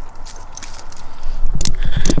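Handling noise from a handheld camera being moved: scattered clicks and rustling, with a low rumble building from about one and a half seconds in as the camera swings close against a hooded jacket.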